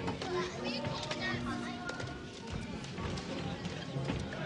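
Several voices talking at once, indistinct backstage chatter, over background music.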